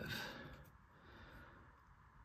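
Faint rustle of a trading card being handled in its paper sleeve, over quiet room tone.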